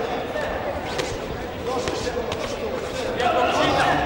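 Voices calling out in a boxing hall, loudest near the end. A few sharp thuds come from the bout in the ring, about four in all.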